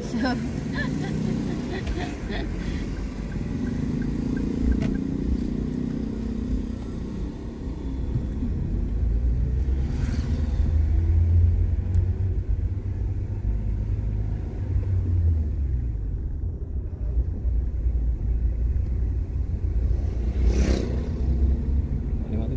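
Low, steady rumble of a car's engine and tyres heard from inside the cabin while driving slowly. The rumble grows a little stronger about nine seconds in, and there are two brief swells of noise at about ten and twenty seconds in.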